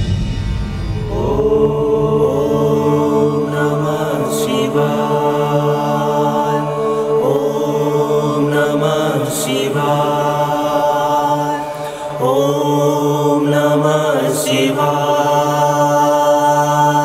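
Devotional mantra chanted in long, drawn-out sung phrases over a steady low drone, as background score. A new phrase begins every few seconds, with a brief pause near the end.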